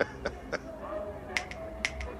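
Two sharp finger snaps about half a second apart, in the second half.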